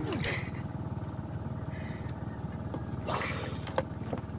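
A short splash of water about three seconds in, as a diver works his way through the net opening of a fish pen, over a low steady rumble.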